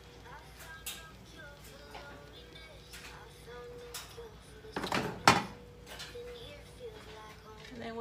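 Two sharp clunks about five seconds in, from the metal baking pan and oven being handled as the meatloaves come out, over quiet background music with held notes.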